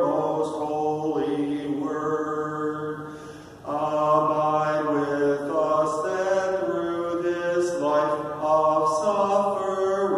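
A man's voice singing a slow, chant-like hymn melody in long held notes that step from pitch to pitch, with a short pause for breath about three and a half seconds in.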